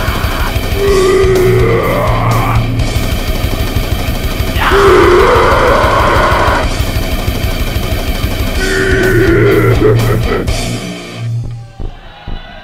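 Grindcore band playing fast, heavily distorted metal with rapid drumming and distorted guitars; the music breaks off near the end.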